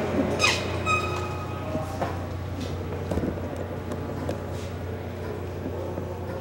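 A door squeaks briefly about half a second in, a short falling screech and then a pitched squeal, over a steady low hum. Scattered light clicks and knocks follow.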